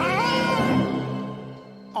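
A cartoon lion cub's little roar: a short, high cry that glides up in pitch and holds for about a second, over background music that drops away near the end.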